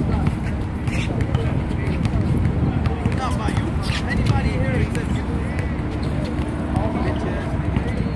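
Outdoor pickup basketball game: a basketball bouncing on the court a few times and short squeaks, with players' voices over a steady low rumble.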